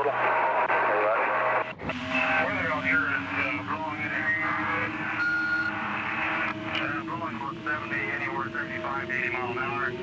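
Recorded radio-telephone call with voices too garbled to make out under noise. From about two seconds in, a steady whistle runs underneath and slowly creeps up in pitch.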